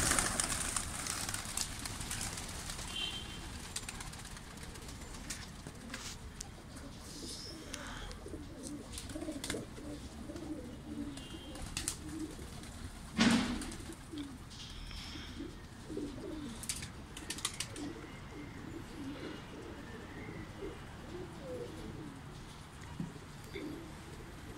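A flock of domestic pigeons taking off with a burst of wing flapping, followed by pigeons cooing again and again in short low calls. One sharp, loud knock-like sound comes about 13 seconds in.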